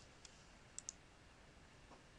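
Faint computer mouse clicks against near silence: one light click, then a quick double click just under a second in.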